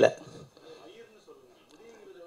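Faint background speech, with a wavering voice-like pitch, right after a man's loud voice breaks off at the very start.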